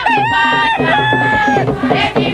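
A rooster crowing, one long crow that dips in pitch partway and ends a little before the close, over a regular rhythmic music bed.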